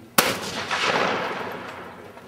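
A single shotgun shot at a clay target, a sharp crack about a fifth of a second in, followed by a long rolling echo that fades away over about a second and a half. The target is broken by the shot.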